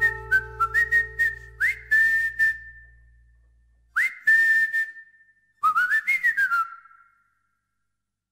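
A person whistling a slow closing melody, each held note swooping up into pitch, with light clicks among the notes. The low accompaniment under it fades away about halfway through, and the whistling stops for good a little after seven seconds.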